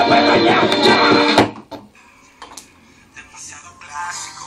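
Music with vocals playing loudly through a homemade tin-can speaker, cutting off abruptly about a second and a half in; only faint background sounds follow.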